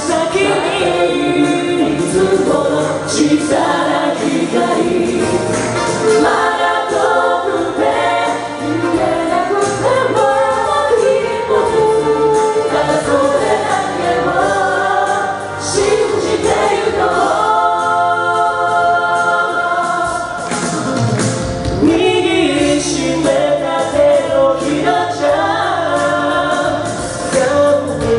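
An a cappella vocal group of male and female singers on microphones, singing a pop song in close harmony with no instruments. Around two-thirds of the way through, a deep voice sweeps down low.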